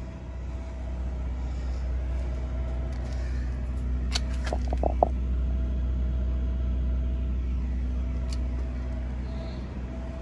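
Steady low rumble with a faint, even machine hum, and a few brief clicks about halfway through.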